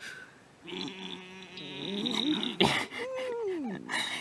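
A person's voice making wordless noises: a wavering, hummed sound, then a sharp click, then one long whine that rises and falls in pitch.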